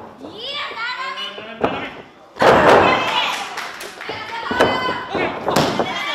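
Wrestlers' bodies hitting the ring canvas: one heavy thud about two and a half seconds in, with lighter knocks around it, between women's high-pitched shouts.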